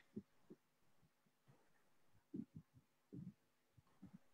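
Near silence, broken by a few faint, brief low thumps spread through the few seconds.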